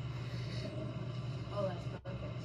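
A vehicle engine idling nearby: a steady low hum.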